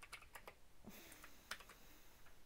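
A few faint, scattered computer keyboard and mouse clicks over near silence.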